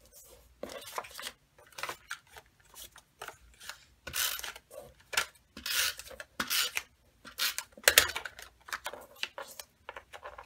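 Several short rasping runs of a Snail adhesive tape runner laying strips of adhesive on cardstock, mixed with paper being rubbed and pressed down by hand.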